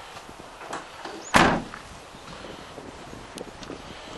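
A Vauxhall Vivaro van's load door slammed shut once, a single loud bang about a second and a half in.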